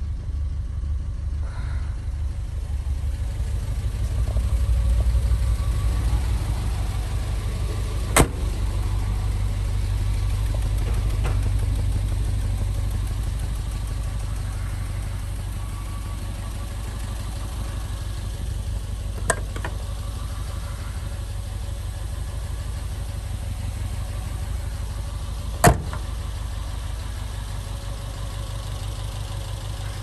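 Citroën CX 25 GTI Turbo 2's turbocharged 2.5-litre four-cylinder engine idling steadily with a low rumble. Three sharp clicks come at intervals over it.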